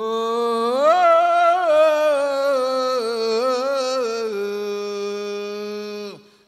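A man singing one long melismatic phrase into a microphone, the pitch wavering through ornaments before settling on a held note for the last couple of seconds.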